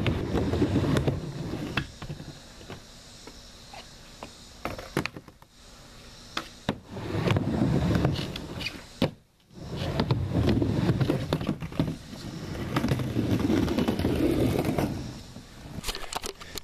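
Skateboard wheels rolling on a plywood bank ramp, a rumble that comes and goes over several runs, with sharp clacks of the board striking the wood in between.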